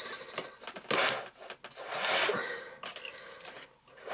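Hands handling the plastic floor head of an upturned Miele upright vacuum, picking threads and debris off the brush roll: irregular plastic clicks and scraping, with two louder rustling stretches about one and two seconds in.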